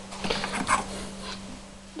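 Soft rustling and handling noise as a hand moves across things on a desk, lasting about a second, over a steady low hum.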